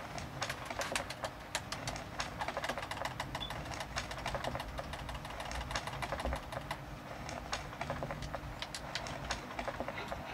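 Rapid, irregular clicking of a handheld game controller's buttons and sticks being pressed, several clicks a second, over a low room rumble.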